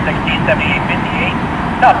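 CSX freight train cars rolling along the rails, a steady low rumble. A crew member's voice calls a signal aspect over a railroad scanner radio, thin and narrow in tone, starting near the end.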